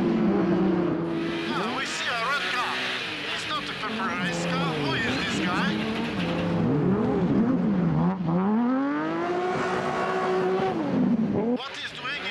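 Race car engines revving up and down over and over as the cars slide sideways on a snow and ice track, the engine note rising and falling every second or so.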